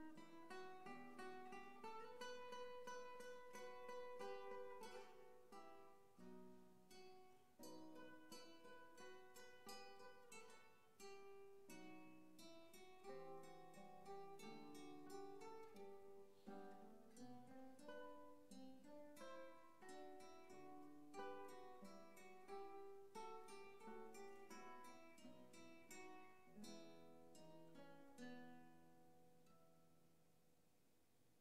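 Two nylon-string classical guitars playing a duet softly, a steady flow of plucked notes in several overlapping lines. The playing thins out near the end, the last notes fading away.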